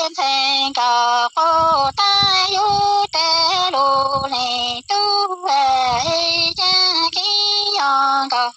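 A woman singing Hmong lug txaj sung poetry unaccompanied, in a run of short held phrases with gliding pitch and brief breaks between them.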